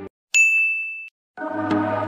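A single high ding sound effect about a third of a second in, ringing on one tone for under a second. Electronic music with a steady beat starts about a second and a half in.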